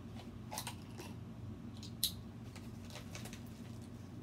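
A plastic shipping mailer being handled and picked at by hand, giving a few light rustles and small clicks, the sharpest about two seconds in, over a low steady hum.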